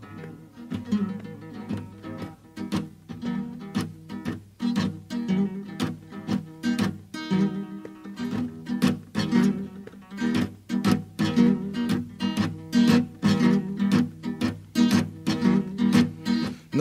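Solo acoustic guitar played in a country-blues style, an instrumental break without vocals. It keeps a steady, driving rhythm of sharp plucked and strummed string attacks over ringing bass notes, growing louder over the second half.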